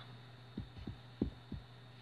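Four soft, low thumps over a faint steady hum.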